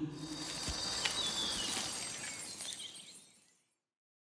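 Glassy, shimmering tail of a cinematic transition sound effect, with a brief falling tone a little over a second in, fading away to silence after about three seconds.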